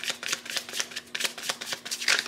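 A deck of tarot cards being hand-shuffled overhand: a quick, even run of soft card slaps, about six a second.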